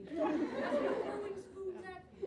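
Several people talking over one another, with the echo of a large hall.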